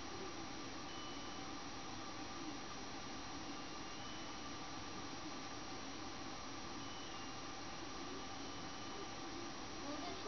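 Steady low background hiss and hum with no distinct events: room tone while a phone sits on its boot screen. A few faint, short high beeps occur about a second in, near four seconds, and near seven and eight and a half seconds.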